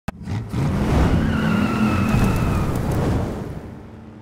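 Car sound effect: an engine running hard with a high tire squeal over it, opening with a sharp click and fading out over the last second.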